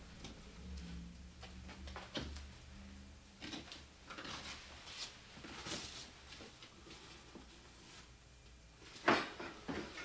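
Scattered knocks and clatter of tools and plastic buckets being handled while a concrete mix is set up, with a louder knock about nine seconds in. A faint low hum runs through the first two seconds.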